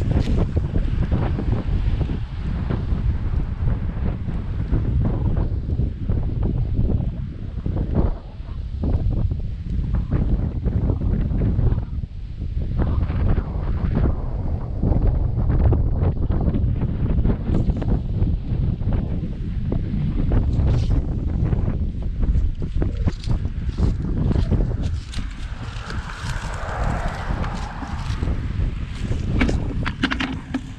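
Strong wind buffeting a GoPro microphone during a bike ride, a heavy low rumble that swells and drops with the gusts. Near the end a higher rushing sound swells and fades.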